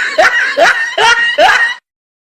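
A person laughing in quick repeated bursts, about three a second, that stop abruptly near the end.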